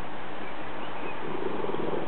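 A Neapolitan mastiff lying on its side, giving a low, pulsing rumble of breath from about a second in, over a steady background hiss.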